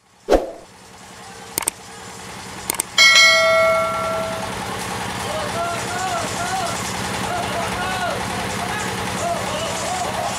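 A small engine runs with a steady hum while a bell-like metallic note is struck once about three seconds in and rings out, followed by people's voices over the engine.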